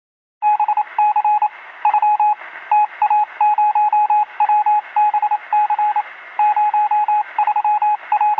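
Electronic beeping on an outro sound effect: a single mid-pitched tone keyed on and off in quick irregular groups of short and long beeps, like Morse code, over a steady radio-like hiss. It starts about half a second in.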